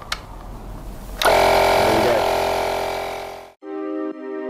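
A click, then about a second in the Makita DMP180 18V cordless tyre inflator's compressor starts and runs steadily, pumping up a van tyre; it fades away after a couple of seconds. Background music with a beat comes in near the end.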